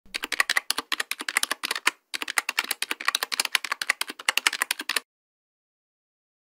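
Computer keyboard typing, rapid keystrokes in two runs with a short break just before two seconds, stopping about five seconds in.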